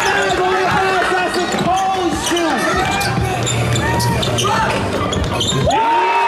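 A basketball bounced again and again on the court as a player dribbles, over a steady backdrop of a voice and music.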